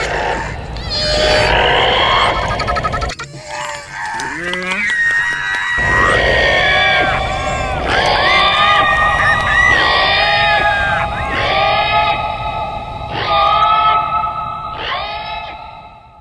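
Dramatic film soundtrack with creature screeches and calls; from about six seconds in, held music tones sound under repeated short cries. It stops abruptly at the end.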